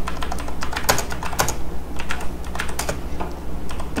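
Typing on a computer keyboard: a quick, irregular run of key clicks, over a low steady hum.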